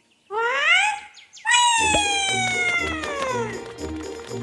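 A high, clear cartoon glide that rises quickly as a tiny character leaps, then a long tone sliding steadily downward as it falls. Background music with a steady beat comes in under the falling tone.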